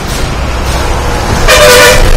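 A short, loud horn blast of about half a second, near the end, over a steady low background rumble.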